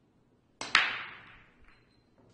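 Break shot in Chinese eight-ball pool. A little over half a second in, a cue tip clicks on the cue ball. At once the cue ball cracks into the racked balls, the loudest sound, followed by the clatter of balls knocking together and scattering as it dies away, with a smaller click near the end.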